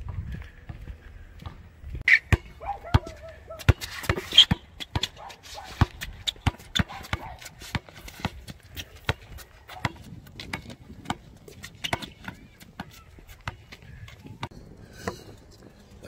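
Basketball dribbled on a concrete sidewalk: a quick run of sharp bounces, about three a second, starting about two seconds in and stopping shortly before the end.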